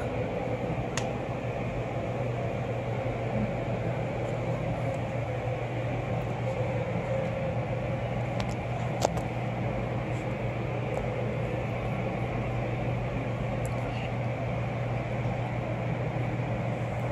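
Steady low hum of a large indoor hall's ventilation, with a single sharp click about nine seconds in.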